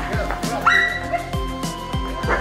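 An Old English Sheepdog barks once, a short high-pitched bark about two-thirds of a second in, over background music with a steady beat.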